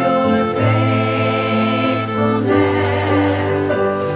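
A small group of voices singing a worship song in long held notes over instrumental accompaniment.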